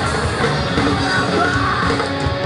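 Live punk band playing loudly on electric guitar, bass guitar and drums, with a singer yelling over the music.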